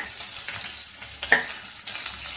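Onions and green chillies sizzling in hot oil in a kadai as a metal spatula stirs them, with a sharp scrape of the spatula on the pan about two-thirds of the way through.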